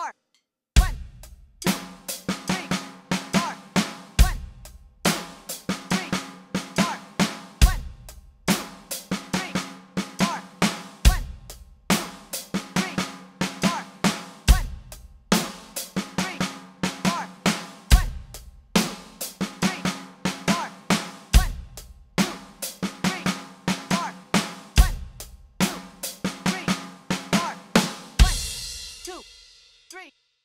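Roland electronic drum kit played at 70 beats per minute: a rock groove with a syncopated snare-drum fill, repeated bar after bar, each bar opening with a heavy kick-and-cymbal hit about every three and a half seconds. A final cymbal crash rings out near the end and is cut off.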